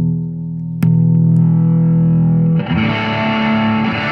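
Single-pickup 2010 Fender Custom Shop George Fullerton Snakehead Telecaster played through a Fender Super Reverb with a little overdrive. A held chord rings, a new chord is struck about a second in and left to sustain, then busier picked notes follow past halfway.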